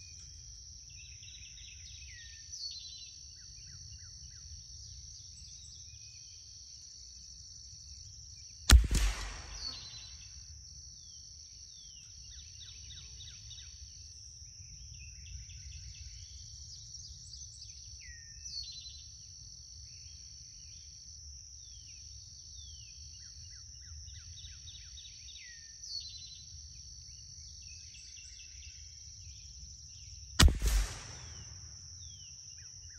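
A steady high insect buzz with scattered bird chirps, broken about nine seconds in by a single sharp .22 LR gunshot, the loudest sound, heard from the target end of the range.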